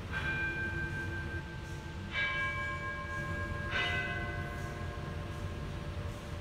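A bell struck three times, about two and one and a half seconds apart. Each strike rings on at a different pitch, the tones overlapping as they fade slowly.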